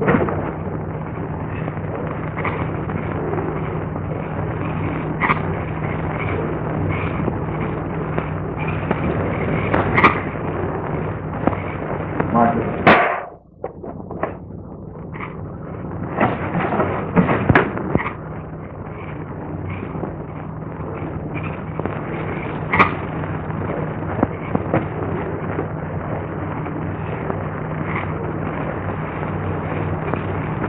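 Old film soundtrack noise: a steady hiss and low hum with crackle and scattered sharp pops, dropping out for a moment about halfway through.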